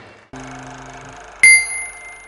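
A small bell struck once, a bright ding about a second and a half in that rings on and fades, over a faint steady hum.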